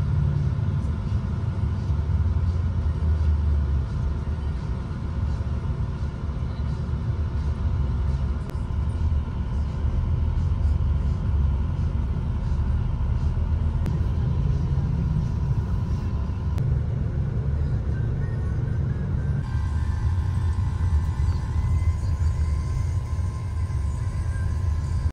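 Steady low engine and road rumble inside a moving bus, with soft background music over it.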